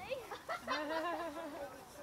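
A person's wavering, warbling vocal sound, not words, with the pitch wobbling up and down for about a second.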